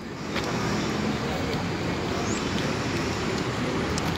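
Steady road traffic noise from passing cars, swelling slightly about a third of a second in and holding steady.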